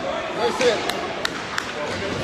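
Spectators' voices murmuring in an ice hockey rink, with three sharp clacks from the play on the ice, a third of a second apart, about a second in.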